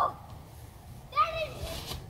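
A child's voice: the tail of a loud shout right at the start, then a high-pitched call lasting about a second from about a second in, over a low outdoor background.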